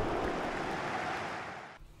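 A steady rushing noise, like surf or wind, that fades away near the end.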